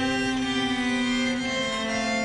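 Bowed string accompaniment holding a sustained chord after the soprano's phrase has ended, some of the notes dropping away near the end.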